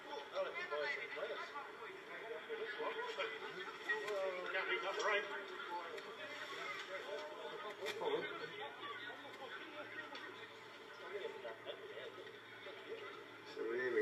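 Indistinct chatter of several voices from rugby league players and sideline spectators, with no one speaking close to the microphone.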